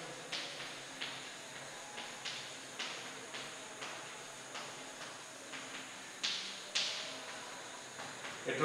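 Chalk tapping and scratching on a blackboard as words are written, an irregular string of short strokes, with two louder ones a little over six seconds in.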